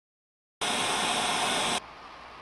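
A loud burst of steady static-like hiss that starts abruptly about half a second in, cuts off about a second later, and drops to a faint hiss.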